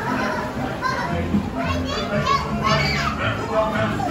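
Children's high-pitched voices calling out, busiest from about one and a half to three seconds in, over the ride's background music with sustained low notes.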